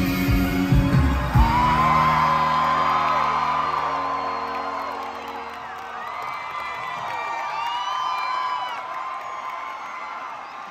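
A rock band playing live. The drums stop about a second and a half in on a final chord that rings out and fades, while the crowd cheers and whoops.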